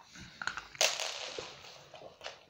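A malamute crunching a hard dog treat: a few small clicks, then a sudden loud crunch just under a second in that trails off.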